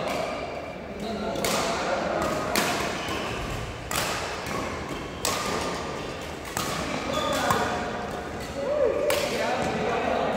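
Badminton rackets hitting a shuttlecock in a rally, sharp hits about every second and a half, ringing in a large sports hall, with voices in the background.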